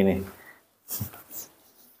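A person's voice says one short word, followed by a couple of brief, soft rustling sounds.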